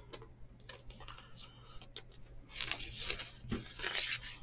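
Faint rustling of a thin clear plastic card sleeve as a trading card is slid into it, with a few light clicks at first and a denser crinkling rustle in the last second and a half.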